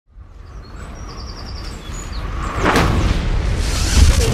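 Birds chirping over a low rumble that swells steadily, then a whoosh about two and a half seconds in as the rumble grows louder.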